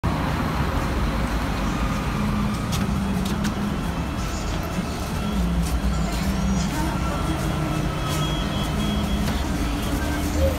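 Scania K310 bus's diesel engine idling, a steady low rumble with a held hum, heard first from beside the bus and then from inside it. A few sharp clicks sound over it.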